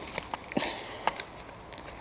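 A short breathy sniff about half a second in, among a few faint clicks and rustles of handling close to the microphone.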